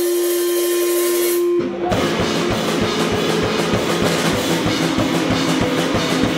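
A screamo band playing live. A single steady tone is held for the first second and a half, then distorted electric guitar and drum kit come in together with a fast, driving beat.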